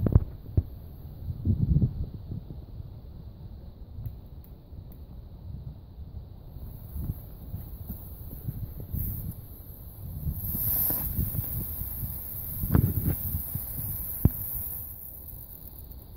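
Small Class 1 firework fountain hissing faintly as it sprays sparks; the hiss builds in about six seconds in, is strongest a little past midway and fades out near the end. Low wind rumble on the microphone runs under it throughout, with a couple of sharp clicks.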